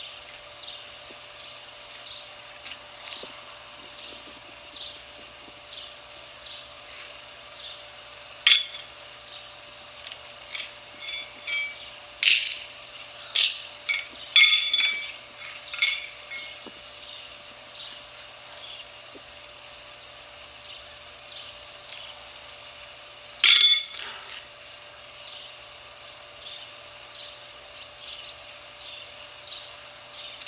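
Steel horseshoes clanking against each other and the stake: a run of sharp, ringing metal clinks over several seconds, then a single loud clink some seconds later.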